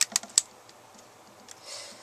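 Three sharp little clicks in quick succession at the start, from rubber bands and a hook being worked against the pegs of a clear plastic Rainbow Loom, then faint handling noise.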